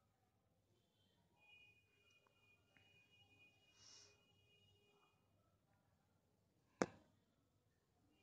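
Near silence, broken by one sharp click near the end.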